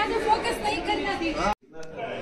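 Indistinct chatter of several voices that cuts off suddenly about one and a half seconds in, followed by quieter voices.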